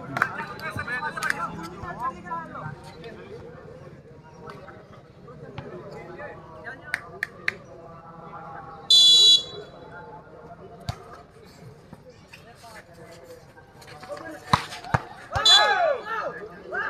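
Referee's whistle, one short shrill blast about nine seconds in, over a murmur of crowd and players' voices. Sharp knocks of the volleyball being struck come near the end, with shouting as the rally starts.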